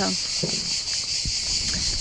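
Steady, high-pitched chirring of an insect chorus, with a slight pulsing.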